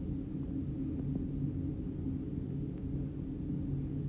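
Steady low background hum with no distinct events.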